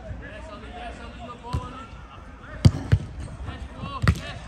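A football being kicked on artificial turf: a thud about one and a half seconds in, then two louder thuds close together about three-quarters of the way through, with players' voices in the background.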